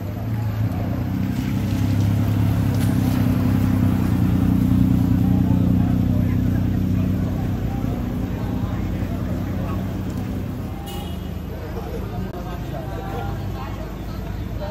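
A motor vehicle's engine running close by, growing louder to a peak about five seconds in and then fading away, with voices of people in the street.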